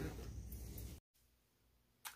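Near silence: faint room tone that fades out, then drops to dead silence at an edit about halfway through.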